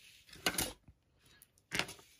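Light handling sounds of paper and cardstock on a wooden craft table: two short bursts of rustling and small taps, about half a second in and again near the end.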